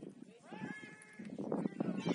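Voices shouting and calling out across a football field, some high-pitched and drawn out, louder in the second half.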